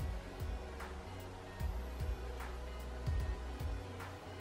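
Background music with a low, pulsing beat and held tones.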